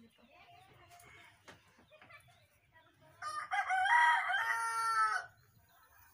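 A rooster crowing once, a single pitched call of about two seconds heard about halfway through.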